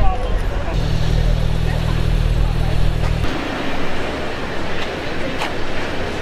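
A car engine running with a low, steady rumble that starts about a second in and cuts off abruptly two seconds later, followed by street traffic noise and voices.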